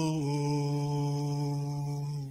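A man singing one long, steady held note in a Somali song, drawing out the end of a sung line.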